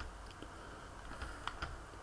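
Several faint, scattered clicks of computer keys as the lecture slides are advanced, over a low steady hum.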